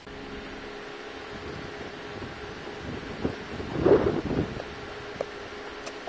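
Outdoor ambience: a steady low hum runs under wind on the microphone, which surges into a loud rough gust about four seconds in. A few light footfalls on pavement follow near the end.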